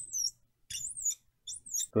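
Felt-tip marker squeaking on a glass lightboard as small circles are drawn: three short, high squeaks that waver up and down in pitch.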